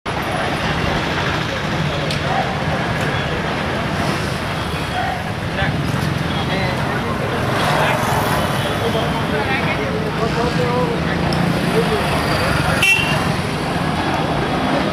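Street traffic with vehicles going by, mixed with the voices of people nearby; a steady, busy roadside din.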